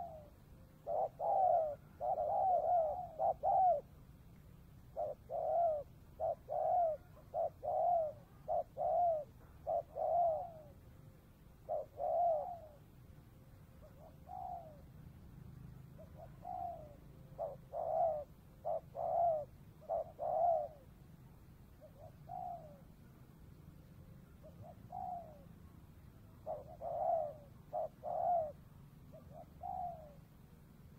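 Spotted dove cooing: runs of short coos, each rising then falling in pitch, in clusters separated by short pauses, quieter for a few seconds past the middle.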